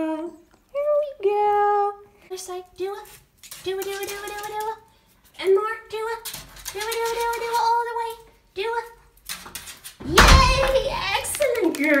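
A woman's high-pitched, sing-song voice with long drawn-out vowels, in baby-talk the recogniser could not make into words. A loud rumbling handling noise near the end.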